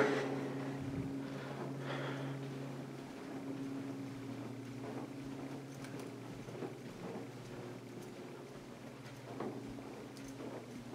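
Quiet indoor room tone: a low, steady hum, its lower part stopping about three seconds in, with a few faint soft knocks later on.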